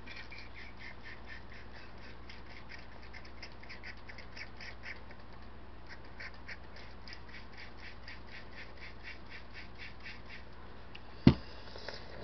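Plastic squirt bottle squeezed over and over, about four short, high-pitched squirts a second with a brief pause about halfway. Held upside down, it spits rather than sprays. A single sharp knock near the end.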